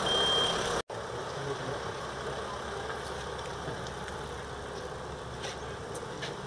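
An ambulance's reversing alarm gives one high half-second beep over its running engine. The sound then breaks off sharply, and a steady vehicle engine and road hum follows.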